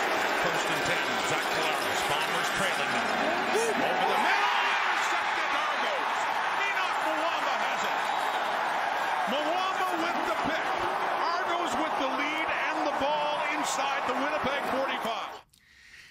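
Football stadium crowd cheering in a dense, steady wash of noise, swelling slightly a few seconds in, then cutting off abruptly just before the end.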